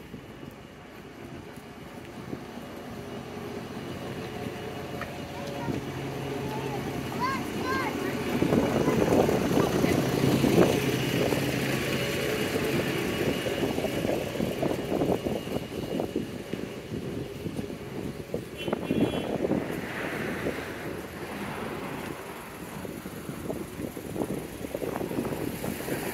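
Urban street traffic: a double-decker bus's diesel engine draws near and passes close about ten seconds in. Cars keep driving by afterwards.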